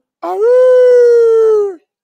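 A man howling like a wolf into a handheld microphone: one long, steady, loud call that sags slightly in pitch as it ends.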